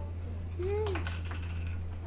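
A steady low hum, with a few light clicks and a brief voice-like sound near the middle.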